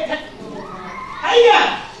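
A woman's voice through a microphone in a hall: one loud vocal exclamation about one and a half seconds in, between quieter trailing sounds.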